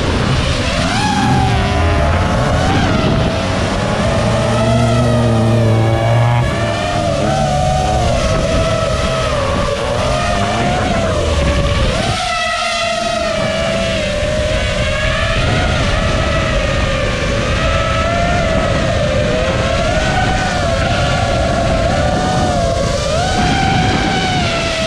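FPV quadcopter's motors and propellers whining, the pitch wavering up and down with throttle, heard from the drone's onboard camera. A lower hum joins for a couple of seconds around five seconds in.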